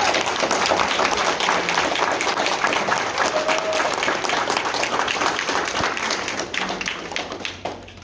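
Audience applauding, the clapping thinning and fading away over the last second or so.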